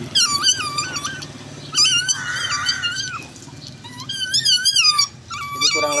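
Baby otter calling with loud, high-pitched, wavering squeals in three long bouts, begging at food held out in front of it: the noisy calling of a hungry otter.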